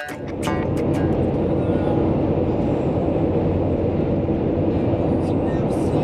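Steady road and engine noise inside a vehicle's cabin while driving at highway speed, a constant, even rumble. The last few guitar notes of background music fade in the first second.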